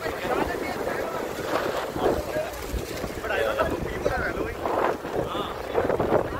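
Sea surf breaking and washing over a rocky seawall, with wind noise on the microphone. People's voices chatter over it now and then.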